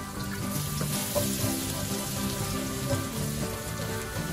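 Minced garlic sizzling in hot oil in a wok, the sizzle swelling about half a second in as the garlic hits the oil. Background music plays throughout.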